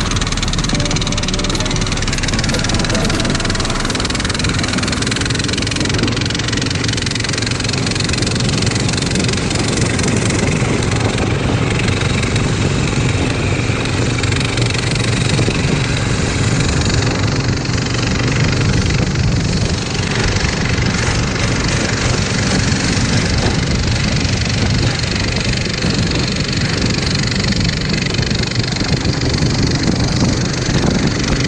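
Engine of a motorized snow tow running steadily while it pulls a sled across a snow-covered frozen lake, with a continuous loud rush of travel noise.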